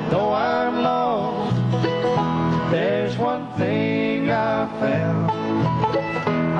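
Live bluegrass band playing between sung lines: acoustic guitar and mandolins keep a steady strummed rhythm while a melody line slides up and down over it.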